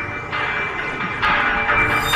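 Dramatic TV intro theme music with layers of sustained ringing tones that come in as new layers about a third of a second and again a little over a second in.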